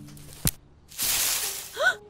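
A single sharp click, then a brief rustling hiss about a second in, followed by a short rising-and-falling voiced "hm?" just before the end.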